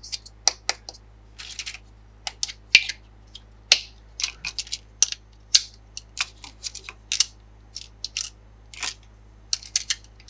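Hard plastic toy food pieces clicking and tapping together as they are stacked and pressed into place: an irregular run of sharp clicks, with a short scrape about one and a half seconds in.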